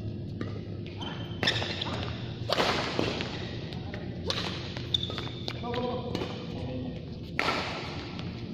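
Badminton rackets striking a shuttlecock in a rally: four or five sharp smacks, one to three seconds apart, echoing in a large hall over a steady low hum.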